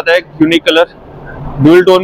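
A man speaking, with a short pause a little under a second in, then talking again near the end.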